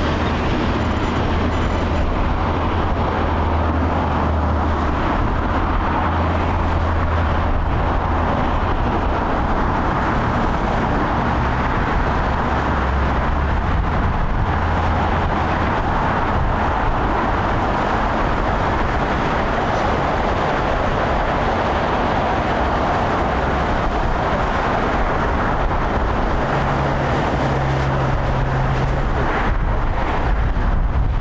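Airbus A350's Rolls-Royce Trent XWB jet engines running as the airliner taxis onto the runway: a steady rushing jet noise over a low hum, swelling somewhat in the middle.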